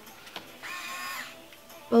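InStyler rotating-barrel hair styling iron, its barrel motor whirring briefly for about half a second, starting just over half a second in.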